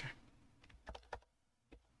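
Faint computer keyboard keystrokes: about five separate key taps spread over a second, the last one standing apart from the others.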